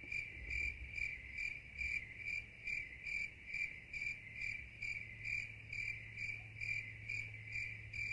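A cricket chirping steadily at one pitch, a little over two chirps a second, with a low hum underneath.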